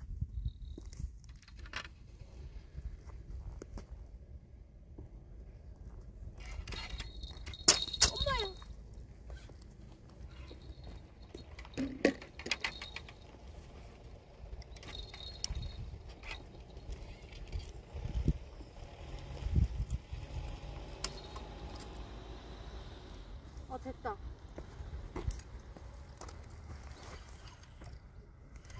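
Low wind rumble on the microphone with scattered clicks and clinks of handled fishing tackle, as a tangled line snagged on a rock is worked from the rod; the sharpest clink comes about eight seconds in.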